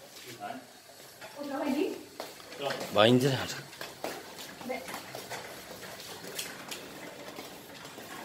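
Brief voices, then light, irregular clicking and rattling from a hand trolley loaded with a tall wooden vase being wheeled over a tiled floor.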